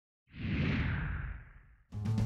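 A whoosh sound effect with a deep rumble underneath, swelling in a quarter second in and fading away over about a second and a half. Music with drums starts right at the end.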